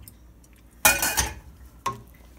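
Browned ground beef being tipped and scraped out of a perforated strainer into a steel pot of tomato sauce: a short scraping clatter about a second in. A single sharp knock follows near the end.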